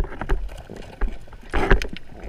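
Underwater sound through a camera housing: water rushing past as the diver swims, with scattered sharp clicks and a louder swish about one and a half seconds in.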